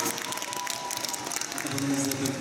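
Scattered audience applause, many hands clapping, over a soft held musical tone. A man's voice comes back in near the end.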